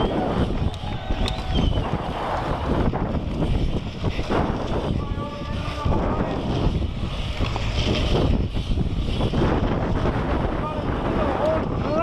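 Wind buffeting the microphone of a GoPro HERO3 carried by a BMX racer at speed, mixed with the rumble of the bike's tyres rolling over paved berms and dirt track.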